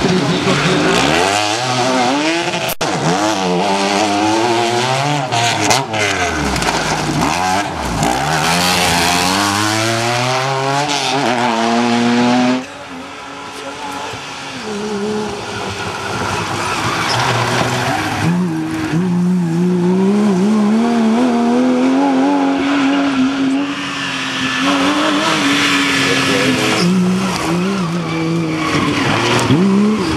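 Off-road rally cars racing past on a dirt stage, their engines revving up and down repeatedly through gear changes. About twelve seconds in the sound cuts to another rally car whose engine note climbs steadily as it comes on.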